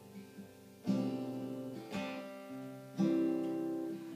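Acoustic guitar strummed: three chords about a second apart, each left to ring and fade before the next.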